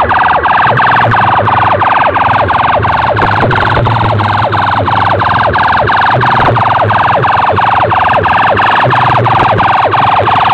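A tall stack of horn loudspeakers blasting a loud, continuous electronic siren-like effect: quick falling sweeps repeating about four times a second, over a low steady drone.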